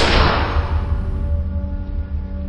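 A single gunshot, sharp at the start, with a reverberant tail that dies away over about a second and a half, over a low, sustained music drone.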